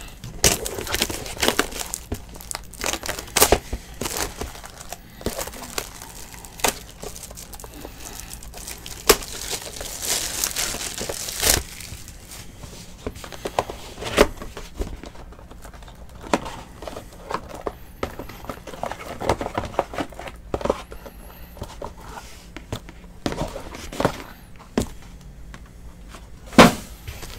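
Plastic shrink wrap crinkling and tearing as it is pulled off a cardboard trading-card box, mixed with short clicks and knocks as the box is opened and handled. A longer stretch of dense crinkling and tearing comes about ten to twelve seconds in.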